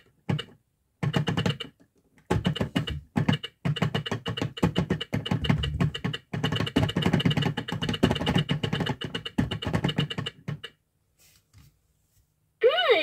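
Plastic toy teaching clock's hands being turned by hand, the gear train inside clicking in a fast, dense run with a brief pause near two seconds in; it stops a little before the end, leaving a few faint ticks.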